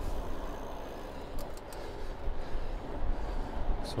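Steady low rumble of wind on the microphone and tyres rolling on tarmac as a Trek Checkpoint ALR 5 gravel bike is ridden at about 14 mph. There are a couple of faint clicks about one and a half seconds in.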